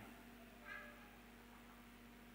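Near silence: room tone with a steady low hum, and one faint, brief high-pitched sound with several overtones a little under a second in.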